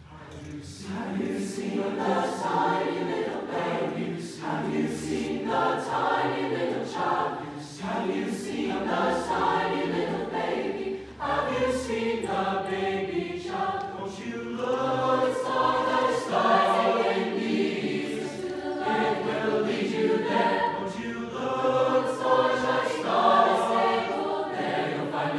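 A mixed choir of male and female voices singing in harmony. The singing begins about half a second in and carries on as one continuous choral phrase after another.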